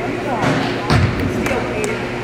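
A basketball bouncing on a hardwood gym floor, with one heavy bounce about a second in, amid voices and short sharp sounds echoing in the gym.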